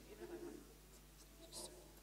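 Near silence with faint, indistinct voices talking away from the microphone, and a brief soft hiss about one and a half seconds in.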